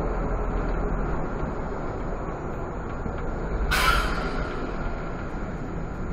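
Irisbus Citelis CNG city bus heard from the cab, its engine and road noise running steadily, with one short, loud hiss of air about four seconds in, typical of the air brakes venting.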